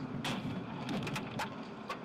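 Steady low road and engine rumble of a car heard on its dashcam recording, with about five sharp clicks scattered through it.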